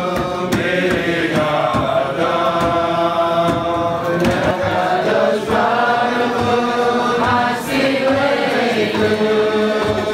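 A large group of young voices singing a Jewish song together in unison at a kumzitz, on long held notes.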